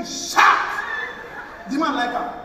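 A man's voice on a stage microphone making short, loud vocal sounds without words. The loudest is a harsh, noisy cry about half a second in, with a shorter pitched call near the end.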